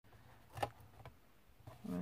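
Hands handling a card gift bag and ribbon: faint rustling, with a sharp tap about half a second in and a lighter one around a second.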